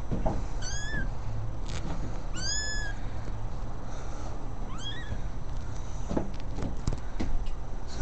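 Kittens mewing: three short, high-pitched mews, one about a second in, a longer one near the middle, and a rising one about five seconds in.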